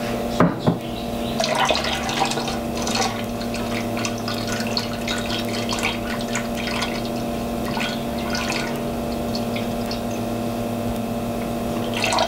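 Lactobacillus plantarum starter culture being poured into a kettle of wort, a trickling, splashing stream of liquid with a few small clicks. It plays over the steady hum of the brewing system's recirculation pump.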